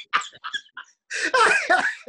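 Men laughing: short choppy bursts of laughter at first, then a loud, hearty burst of laughter in the second half.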